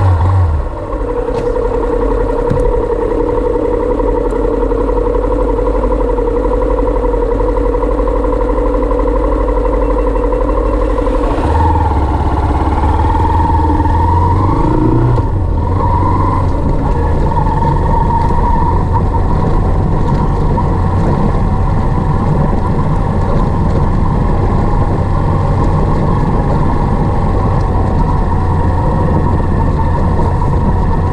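Motorcycle engine running steadily while riding a gravel road. About eleven seconds in, the engine note changes, with a couple of short rises in pitch, and the low rumble grows louder.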